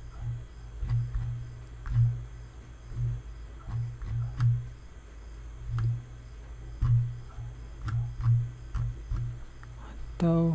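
Faint clicks from a computer mouse as the page is clicked and scrolled, over irregular low thuds about once a second.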